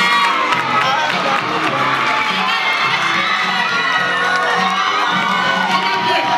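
Crowd of teenage students cheering and screaming, many voices at once, over music playing underneath.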